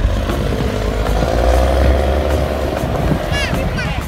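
Double-decker sightseeing bus's diesel engine running as it drives past close by: a low rumble that builds to a peak about halfway through, then eases off.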